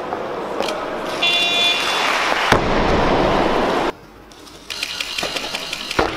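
Competition hall noise with a short electronic tone about a second in, then a loud thud about two and a half seconds in, as of a loaded barbell dropped on the lifting platform. Near the middle the sound drops off abruptly, then comes back with clatter and hall noise.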